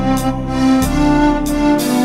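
Roland Music Atelier electronic organ playing an orchestral easy-listening arrangement: sustained string voices over a moving bass line, with light cymbal strokes keeping the beat.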